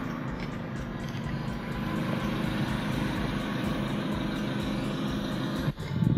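Steady outdoor background noise, an even rumble and hiss with a faint hum, that breaks off abruptly near the end.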